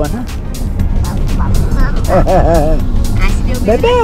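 Steady road and engine rumble inside a moving car's cabin, with music playing over it. There are two short high-pitched vocal sounds, one about two seconds in and one near the end.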